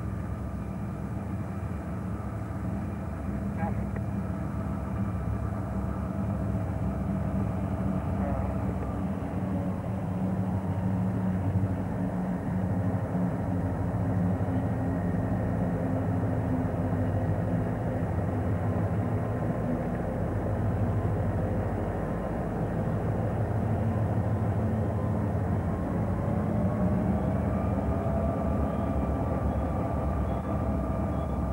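Diesel freight locomotives running past, a steady low engine drone whose pitch dips about a third of the way in and climbs again near the end.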